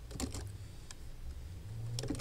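Faint keystrokes on a computer keyboard, a few scattered clicks, over a steady low hum.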